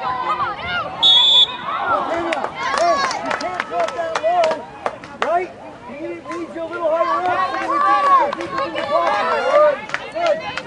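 Voices shouting across a soccer field during play, overlapping and coming and going, with a short high whistle blast about a second in and many sharp knocks and clicks throughout.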